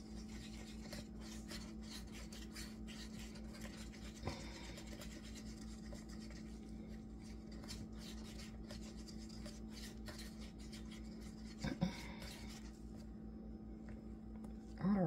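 Wooden craft stick stirring tinted epoxy resin in a mixing cup: a continuous run of light scraping and rubbing against the cup, with a louder knock about four seconds in and another near the end, over a steady low hum.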